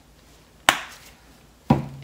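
Two short, sharp knocks about a second apart: a plastic paint squeeze bottle being handled and set down on the work table.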